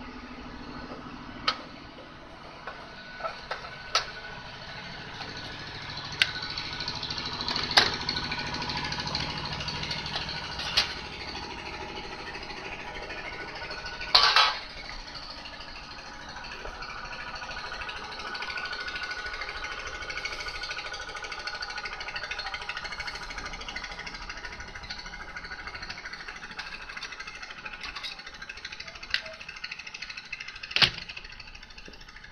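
Scattered sharp metallic clicks and knocks as the sheet-metal top cover of a set-top receiver is unscrewed and taken off, with a louder, longer metal clatter about 14 seconds in, over a steady background.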